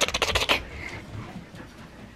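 A Siberian husky scrambling past at close range gives a quick, scratchy clatter of rapid clicks in the first half second. After that there is only faint room noise.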